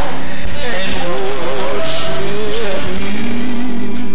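A man singing a slow worship song into a handheld microphone over sustained music. His voice wavers and glides in long held notes, loud and slightly harsh through the church sound system.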